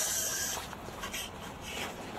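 Footsteps crunching and scraping on icy snow as a man walks carrying heavy farmer's-walk implements. The steps come faintly, about every half second.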